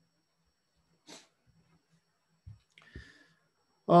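Near silence: room tone broken by a short faint breath-like hiss about a second in and two soft low thumps near the end, then a man's voice begins right at the close.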